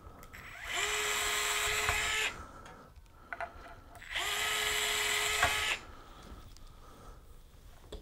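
Small cordless drill boring two pilot holes into the wood floor of a guitar's pickup cavity. There are two runs of about a second and a half each, and the motor whines up to a steady pitch at the start of each.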